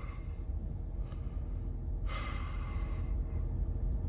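A man's breathy sigh lasting about a second, starting two seconds in, over a low steady hum.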